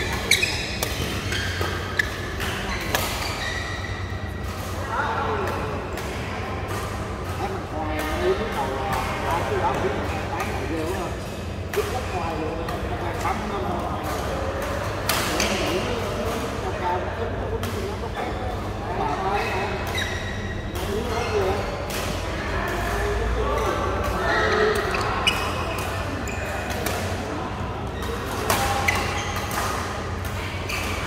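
Badminton rackets striking a shuttlecock in a doubles rally: sharp clicks at irregular intervals, one every second or two, with players' voices in between.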